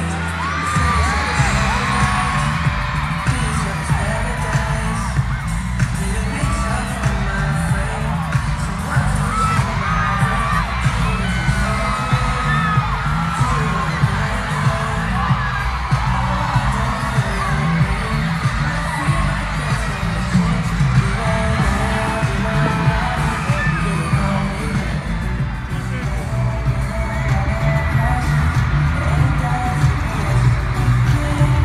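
Live pop concert music played loud through an arena sound system: a heavy bass line with a steady beat, with singing over it and an audience cheering along.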